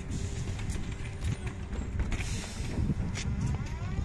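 A MAZ 103T trolleybus's electric traction motor starts to whine, rising in pitch near the end as the vehicle begins to pull away from the stop, over steady street rumble. A short hiss comes about two seconds in.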